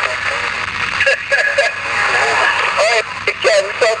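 CB radio speaker putting out a steady band of static with a weak, garbled voice from a distant long-distance station coming through underneath.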